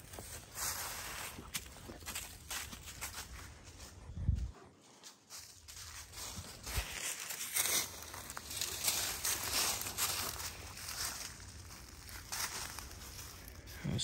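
Rustling and crinkling of a tarp and dry leaf litter as someone moves around close to the tarp and steps about, in irregular scrapes, with a couple of dull thumps midway.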